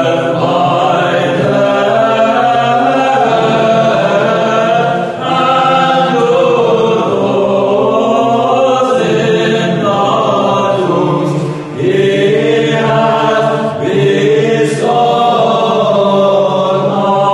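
A choir chanting unaccompanied in long held phrases, with short breaths between phrases.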